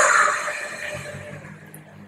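Electric linear actuators of a six-legged Stewart platform whining as the platform drives back to its initial position, loud at first and dying away over about a second and a half.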